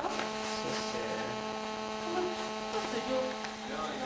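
A steady electrical buzz with a string of evenly spaced overtones, faint voices underneath; the buzz cuts off near the end.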